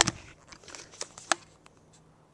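A handful of short, sharp clicks and knocks over the first second and a half, then quiet room tone.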